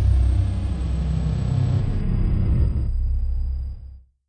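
A deep, steady rumble from the end card's added soundtrack, fading out at the very end.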